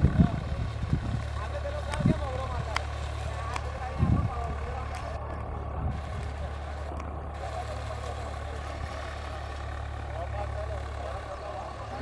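Tractor engine running steadily, a constant low drone, as it pulls a disc harrow through the soil, with a few low thumps in the first four seconds. People talk faintly in the background.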